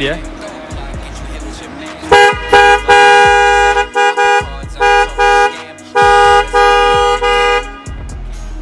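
Aftermarket 'super macho' dual-tone car horn on a Honda Brio, sounded in a series of about ten short and longer blasts starting about two seconds in, two notes sounding together. The sound is very big for a small car: 'gede banget suaranya'.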